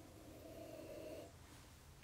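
Near silence, with one faint, soft breath drawn in through the nose lasting about a second: the aroma of bourbon being nosed from a tasting glass.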